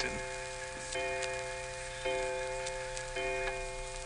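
A clock striking four: four bell-like strokes about a second apart, each ringing on into the next, over the steady hiss of an old transcription recording.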